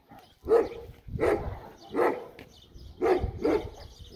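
A dog barking repeatedly, about five short barks spread over a few seconds.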